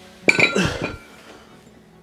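A pair of metal dumbbells clinks together as they are set down after a set, with one sharp clank about a third of a second in that rings briefly.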